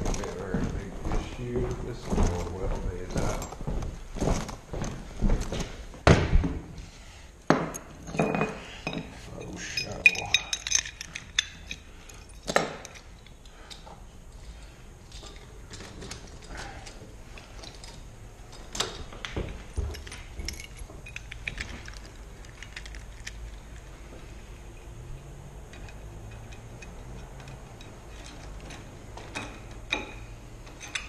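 Metal keys and tools clinking, with irregular knocks from someone moving about and handling a door. Quieter, light handling sounds from about halfway.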